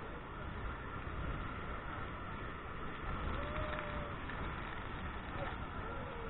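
Steady, muffled rush of the waterfall and churning water around the tour boat, dulled by a waterproof camera housing.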